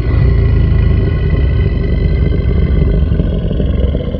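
Boat engine running steadily, with heavy wind rumble on the microphone. The sound starts abruptly.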